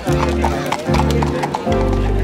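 Horses' hooves clip-clopping at a walk on a paved path, over background music.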